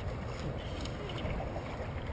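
Steady low outdoor background rumble with a few faint short rustles and no distinct loud event.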